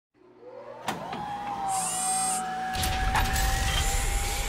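A motor-like whine fades in and rises to a steady held pitch, with a couple of sharp clicks about a second in and a low rumble joining about three seconds in.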